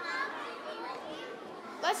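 Indistinct murmur of many children's voices. A girl's voice starts speaking near the end.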